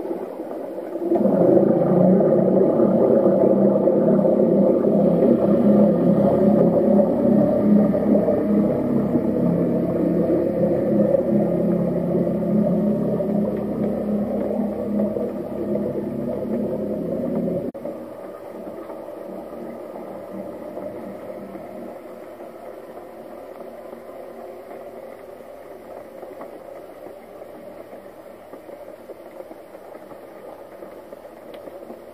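Motor hum heard underwater, most likely from a boat's engine, a steady drone with several pitched layers. It drops away suddenly about eighteen seconds in, leaving a fainter hum.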